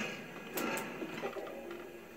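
Quiet background of the hearing room heard through a television speaker, a faint murmur with two short clicks about half a second in.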